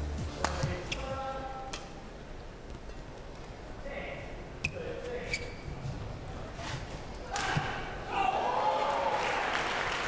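Badminton rackets hitting a shuttlecock in a warm-up exchange: a handful of sharp, unevenly spaced hits, with faint voices in the hall.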